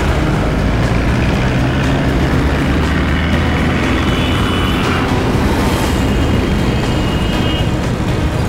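Background music score laid over a loud, steady rumble of road traffic.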